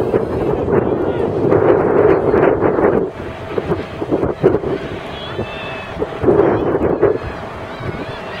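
Wind on the microphone over distant, indistinct voices at an outdoor track meet. It is louder for the first three seconds, then drops to a quieter murmur, with a brief swell again about six seconds in.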